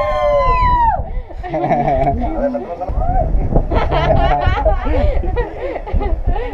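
A group of people shouting together on cue in one long, held yell that breaks off about a second in. It is followed by several voices talking over one another.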